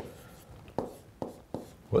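Stylus writing on a touchscreen, with three short, sharp taps of the pen tip on the screen in the second half.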